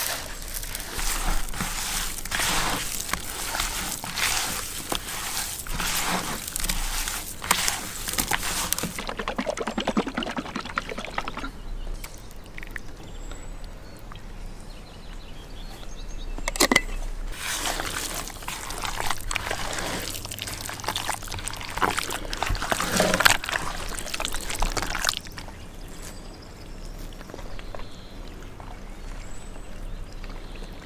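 Hands mixing and squishing seasoned chunks of raw meat in a plastic bowl, in two spells of wet squelching. A sharp click comes between them, and in the second spell a thick white sauce is worked into the meat.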